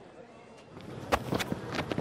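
Faint outdoor cricket-ground ambience picked up by the stump microphone, then from about half a second in a few sharp thuds, the clearest about a second in: the bowler's footfalls running in to the crease.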